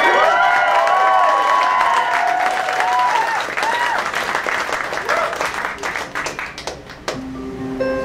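Club audience applauding and cheering with whoops, thinning out over about seven seconds. Near the end an acoustic guitar starts picking single sustained notes.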